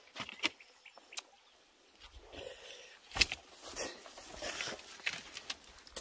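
Footsteps and scuffs of someone scrambling over rock and loose stony ground, with irregular knocks and scrapes; the loudest is a sharp knock about three seconds in.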